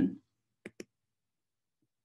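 The end of a woman's spoken word, then two quick clicks close together from a computer mouse or keyboard as the presentation slide is advanced.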